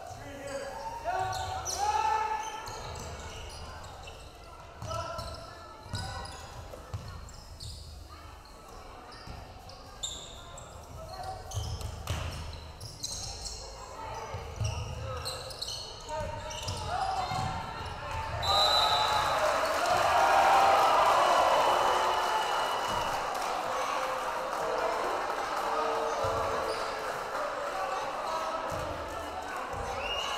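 Basketball being dribbled on a hardwood gym floor amid scattered shouts from players and spectators. About two-thirds of the way through, crowd noise jumps up and holds loud to the end as spectators cheer.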